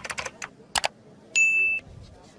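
Subscribe-button animation sound effect: a quick run of mouse clicks, then a short bright bell ding about one and a half seconds in.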